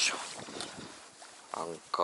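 A sharp knock and rustling of gear being handled in an inflatable boat, then a short effortful 'yoisho' as something is heaved up near the end.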